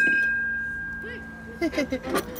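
A metal chime tube on a playground chime frame struck once by its ball striker, ringing with a clear high tone that slowly fades.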